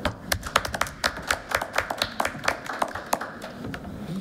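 A few people clapping: light applause made of separate, irregular hand claps.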